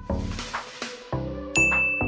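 Background electronic music with a steady beat of repeated notes. A bright hissing wash runs over the first second, and about one and a half seconds in a sharp ding sound effect rings out briefly on one high tone.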